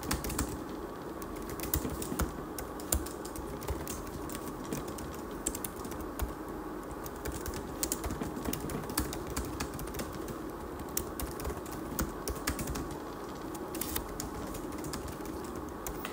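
Typing on a computer keyboard: quick, irregular key clicks throughout, over a faint steady background hum.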